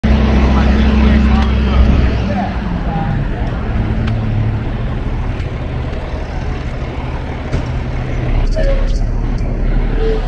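Low, steady rumble of a motor vehicle engine with street traffic noise, loudest in the first two seconds and easing off, with indistinct voices in the background.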